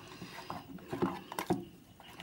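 A hand squishing and mixing thick dosa batter with grated coconut in a stainless steel bowl: an irregular run of short knocks and squelches, clustered a second or so in.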